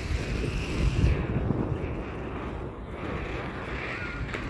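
Wind buffeting a handheld phone's microphone: a rough, low rumbling noise that gusts louder about a second in and eases later on.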